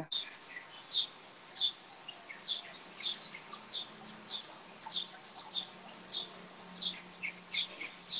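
A small bird chirping, repeating one short high note about every half second.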